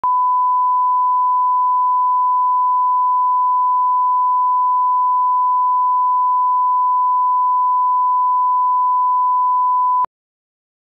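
Steady 1 kHz line-up test tone of a bars-and-tone leader: one pure, unchanging pitch, cutting off abruptly after about ten seconds. It is a reference tone for setting audio levels.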